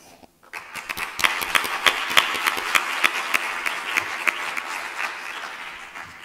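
Audience applauding: many hands clapping, starting about half a second in and dying away near the end.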